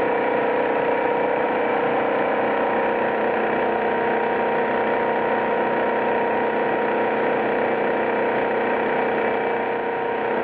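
Servo-driven Flexor 380C label die-cutting and rewinding machine running at production speed, up to 200 m/min, die-cutting self-adhesive labels. It makes a steady mechanical whir with a constant hum.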